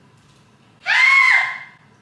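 A person's short high-pitched squeal about a second in, held briefly and then dropping away.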